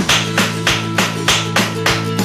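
Metal-plated tap shoes striking a chipboard floor in a steady rhythm, about three taps a second, over guitar music.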